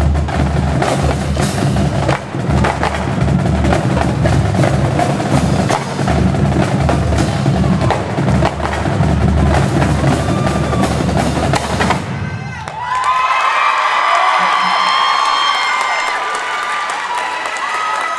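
A marching drumline with bass drums playing a loud, dense cadence. The drumming stops abruptly about twelve seconds in, and a crowd cheers and yells.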